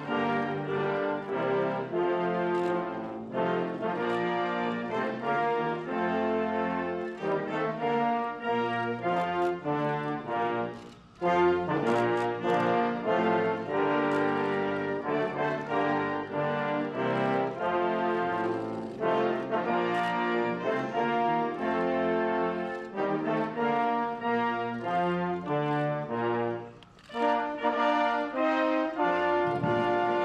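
Military brass band playing a ceremonial piece in sustained chords, pausing briefly between phrases about 11 and 27 seconds in.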